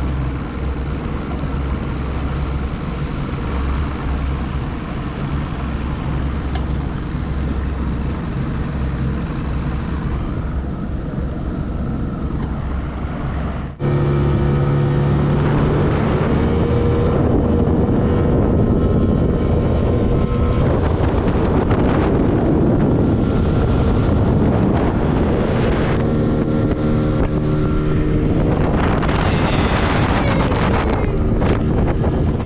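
A boat engine running at low speed with a steady low hum. After a sudden break about 14 seconds in, it runs louder at speed, with wind buffeting the microphone.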